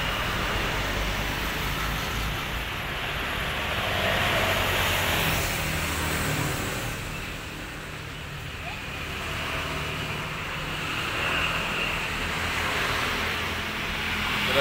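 Steady low engine hum under a broad rushing noise that swells and fades slowly over several seconds: a vehicle engine running.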